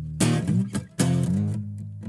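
Acoustic guitar strummed on its own, two hard strokes about a quarter second in and again at about one second, each chord left ringing.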